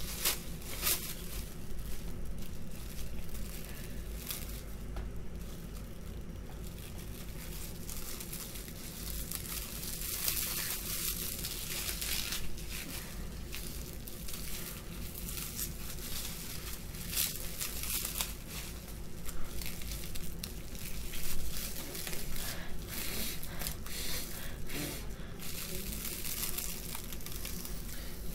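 Plastic wrap crinkling and rustling on and off as it is handled and pressed against a face.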